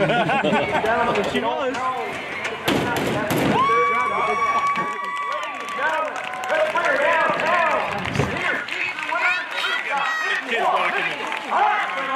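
Excited voices shouting and talking over one another, none of it clear words. There are a few sharp knocks about three seconds in and a long held high note about four seconds in.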